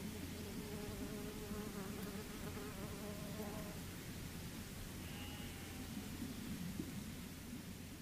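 Summer field recording from an upland farm: a flying insect buzzing near the microphone, its pitch wavering, over a steady low rumble.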